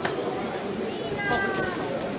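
Background voices in a large sports hall during an amateur boxing bout, with a sharp knock right at the start and a short high-pitched squeal a little past the middle.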